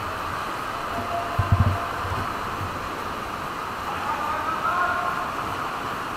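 Fast whitewater rushing through a narrow gorge, a steady hiss of water, with a few low thumps about a second and a half in.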